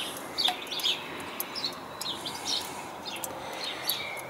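Birds chirping in short, scattered calls over a faint steady background hiss.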